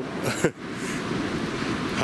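A short laugh, then a steady rushing noise of wind and surf on the shore.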